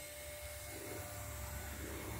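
Faint, steady hum of a small electric machine, low with a thin steady whine above it.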